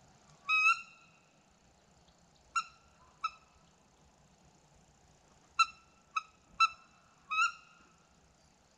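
A bird giving seven short, clear, high calls, each starting with a quick upward swoop: one longer call about half a second in, two a little later, then a run of four near the end.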